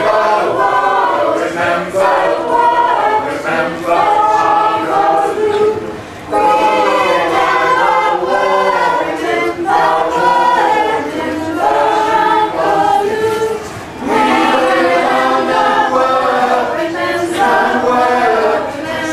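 Mixed choir of men's and women's voices singing together in harmony, in long phrases with short breaks about six and fourteen seconds in.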